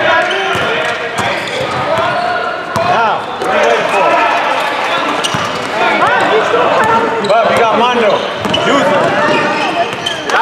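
A basketball being dribbled on a hardwood gym floor during play, with sneakers squeaking on the court and voices calling out.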